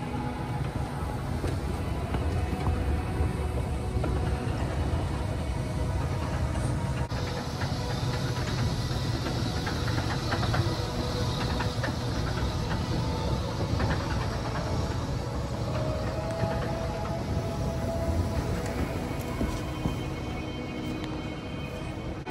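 Shopping-mall escalator running with a rider on it, a steady low mechanical rumble, with background music playing over it.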